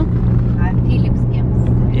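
Road and engine noise inside a moving car's cabin: a steady low drone.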